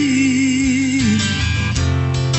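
Live acoustic guitar-and-voice song: a woman holds a long sung note with vibrato over strummed acoustic guitar, letting it drop away about a second in, and a new guitar chord is struck near the end.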